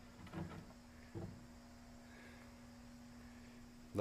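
A few light knocks in the first second or so, then only a faint steady hum.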